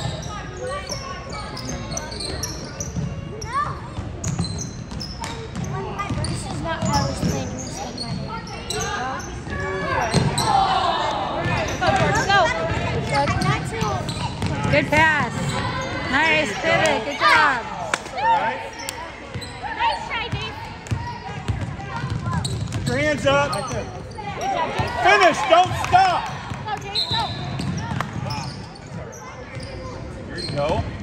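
A basketball bouncing on a hardwood gym floor during a game, with players and spectators shouting over it in a large gymnasium. The voices grow louder around the middle and again near the end.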